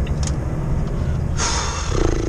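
Steady low rumble of a truck's diesel engine and tyres, heard from inside the cab while driving. A short hiss lasting about half a second comes near the end.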